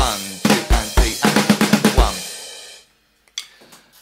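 Electronic drum kit playing a short fill: a quick run of snare strokes with bass-drum hits, ending about two seconds in on a bass drum and cymbal hit whose ring dies away within a second.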